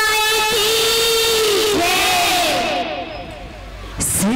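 Girls singing a jas geet devotional song over a PA: one long held note that ends about a second and a half in, then several voices in falling glides, fading somewhat near the end.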